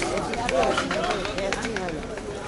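Chatter of a market crowd: several voices talking at once, none standing out, with scattered light clicks.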